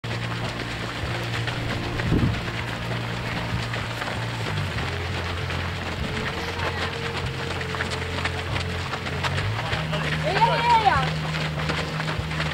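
Footfalls of many runners on a dirt path, a dense pattering crackle, under a steady low hum that shifts pitch twice. Near the end a voice calls out with a long shout that rises and falls.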